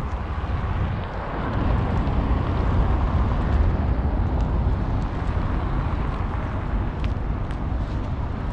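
Steady outdoor city traffic noise with a heavy low rumble, swelling slightly a second or two in, with a few faint clicks near the end.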